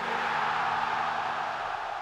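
A rushing noise starts suddenly and slowly fades, like a whoosh effect, over soft background music whose notes drop out near the end.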